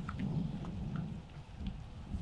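Quiet background: a low, steady rumble with a few faint ticks, and no voices.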